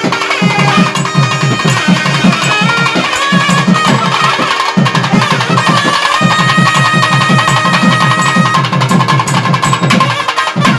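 Nadaswaram and thavil ensemble playing: two thavil barrel drums beating fast, dense strokes under the nadaswarams' held and gliding reed melody, over a steady low drone.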